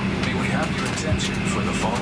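An English in-flight announcement voice at a pause between sentences, over a steady low hum.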